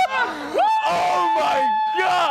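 Group laughter, then one high voice holds a long, steady shriek for over a second.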